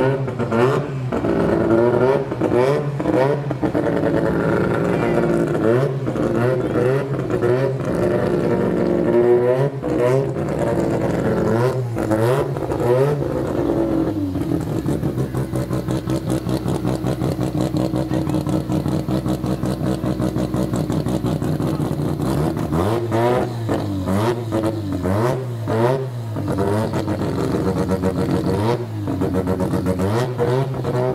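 Drag-race car engines revved hard over and over in rising and falling sweeps. From about halfway, a tuned engine idles steadily close by, then is blipped in short revs near the end.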